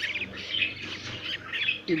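Pin-feathered lovebird chicks, about two weeks old, making a string of short, high calls.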